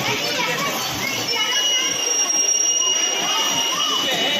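Bumper car ride: riders' voices and shouts, with a steady high-pitched whine that starts about a second in and holds for about two and a half seconds.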